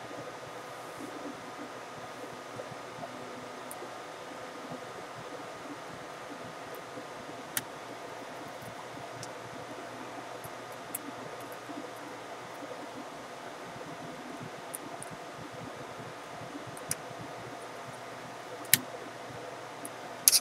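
A fan running with a steady hum and faint whine, broken by a couple of sharp clicks as the laptop is handled.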